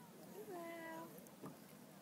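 A faint, drawn-out call from a distant person's voice, one long vowel that slides down and then holds, about half a second in.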